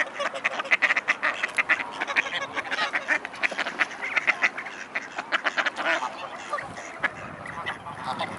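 Mallards quacking and greylag geese calling together, a dense run of short, rapid calls that thins out after about six seconds.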